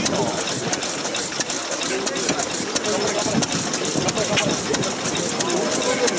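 Antique stationary engine running at a slow idle, with a string of sharp ticks over a crowd's chatter.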